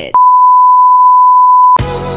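A single loud electronic beep, one steady high pitch held for about a second and a half. It cuts off abruptly as music with a drum beat starts near the end.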